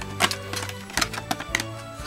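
Background music with a steady low bass line, over several sharp crinkling clicks of a clear plastic blister-pack shell being handled.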